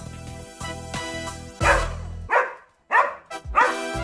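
Upbeat children's song music, which drops out about halfway through for three short dog barks before the music comes back.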